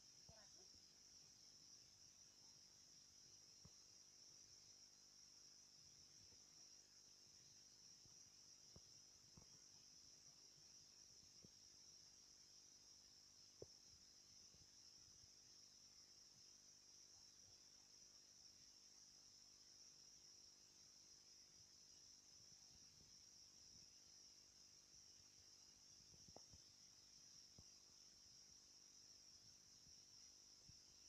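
Faint, steady high-pitched chorus of crickets or similar insects, with a few soft knocks along the way.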